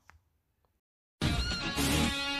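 Near silence, then background music starts suddenly about a second in, with sustained tones.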